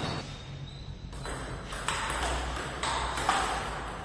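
Table tennis ball hit back and forth across the table: after a quiet first second, about four sharp ringing ticks of ball on bat and table.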